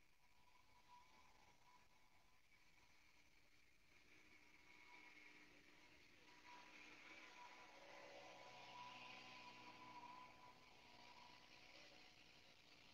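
Near silence: a faint hiss with a faint steady whine, swelling slightly in the second half.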